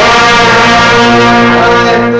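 Brass band of trumpets and trombones sustaining a loud held chord, with a low bass note under it.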